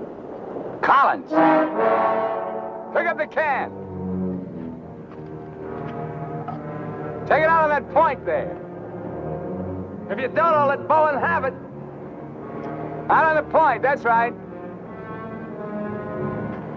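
Dramatic orchestral film score: held brass and string chords, with short loud swelling brass figures every few seconds, often in pairs.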